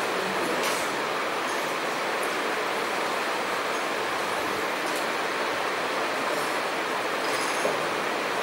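Steady, even background hiss, with a few faint brief scratches of a marker writing on a whiteboard.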